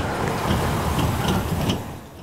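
Pickup truck driving past close by: steady engine and tyre noise on asphalt that swells in at the start and eases a little near the end.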